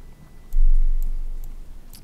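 A low, dull thump about half a second in that fades away over about a second and a half, with a few faint clicks.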